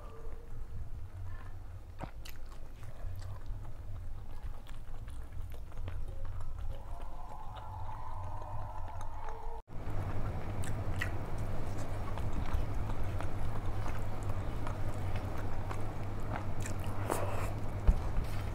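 Close-miked chewing of rice and curry eaten by hand, with many small clicks and mouth noises over a steady low hum. The sound drops out for an instant about halfway through.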